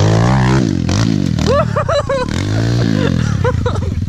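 Modified Kawasaki KLX110 pit bike's single-cylinder four-stroke engine revving up and down in repeated bursts of throttle as it climbs a steep dirt wall. Near the end it drops back to a steady, pulsing idle.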